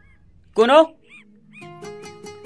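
A cat meowing once: a short rising-then-falling call about half a second in. A few faint high chirps follow, and music notes come in near the end.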